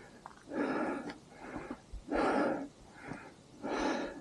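A climber breathing hard: about five heavy breaths in and out, hissy and unvoiced. He is winded from the climb to the 12,799 ft summit.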